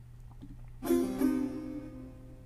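A long-necked Persian lute plucked about a second in: a couple of notes ring out and fade slowly.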